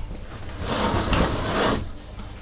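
A suspended-ceiling tile being pushed up and slid aside in its grid, giving a scraping rustle that lasts about a second and a half.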